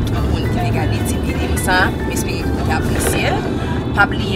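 Car cabin noise while driving: a steady low road-and-engine rumble, with music playing and brief bits of voice over it.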